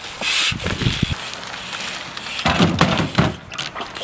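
Jump bike riding across wooden planks laid over old household appliances: tyres rolling and knocking on the wood, with a short rush of noise near the start and a cluster of knocks and rattles about two and a half seconds in.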